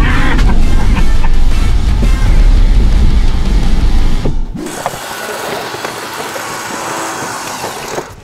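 Background music over an SUV driving off-road on dirt: a heavy low rumble that cuts off about four seconds in, followed by a quieter, steady hiss.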